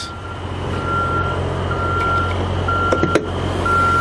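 An electronic warning beeper sounding about once a second, each beep a short steady high tone, over a low steady hum. A single sharp click about three seconds in.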